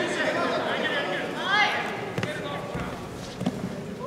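Voices in a large sports hall, with one shout rising and falling about a second and a half in, and a couple of sharp knocks later on.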